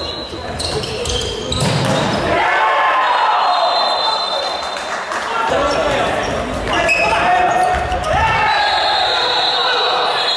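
Futsal ball being kicked and bouncing on a sports-hall floor, with players' shouts echoing in the hall. A referee's whistle blows near the end, stopping play.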